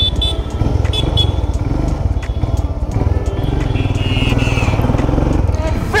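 Motorcycle engine running steadily with a fast low pulsing as the bike sets off.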